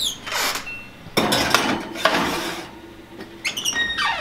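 Oven door opened and a glass baking dish pushed onto the metal oven rack, scraping and clinking, with short squeaks near the start and again near the end.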